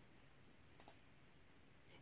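Near silence with two faint clicks, one about a second in and one near the end: computer clicks while a figure is brought up on an on-screen calculator.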